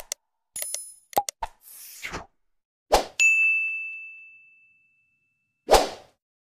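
Animated subscribe-reminder sound effects: a run of short mouse-style clicks and a whoosh, then a hit followed by a high bell ding that rings out and fades over about a second and a half, and a final whoosh as the next graphic slides in.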